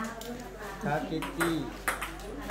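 Table tennis ball clicking against the paddle and table: a few short, sharp clicks, the clearest in the second half.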